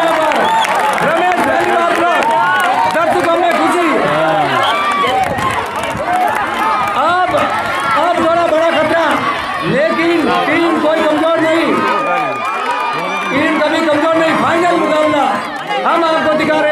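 Crowd of kabaddi spectators shouting and calling out, many voices overlapping at once.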